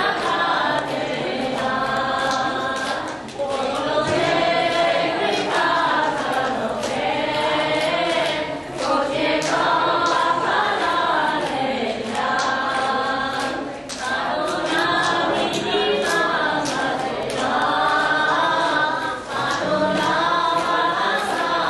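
A group of devotees chanting a kirtan together in unison, sung phrases of about five seconds each with brief pauses for breath between them.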